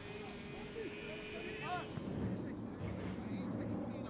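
Quiet talk between footballers over a steady distant mechanical drone, a thin whine at first that gives way to a low rumble about halfway through.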